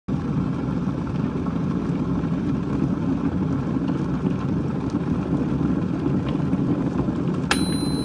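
A steady low noise without a clear pitch. About seven and a half seconds in, a click starts a high steady electronic tone.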